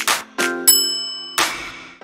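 Outro jingle of sharp struck hits with ringing tones over a held low chord. The loudest is a high, bell-like ding about three-quarters of a second in, and a last hit lands near the end.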